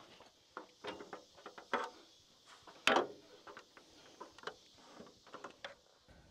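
Irregular light knocks and clunks, the loudest about three seconds in: someone climbing a stepladder and handling a wooden rafter board.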